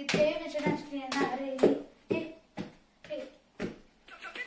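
Hand claps in a steady rhythm, about two a second, keeping time for a bhangra dance step, with a girl's wordless voice sounding between them.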